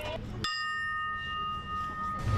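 A ship's bell struck once about half a second in, ringing on with a clear tone that slowly fades.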